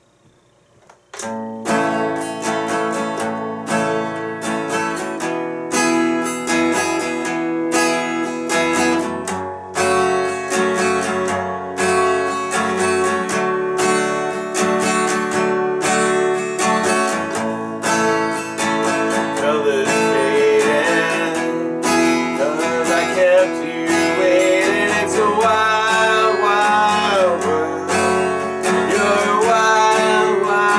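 Acoustic guitar, capoed at the 2nd fret, strummed in a steady rhythm through the G–D–Em–C intro progression. A voice starts singing over it about two-thirds of the way through.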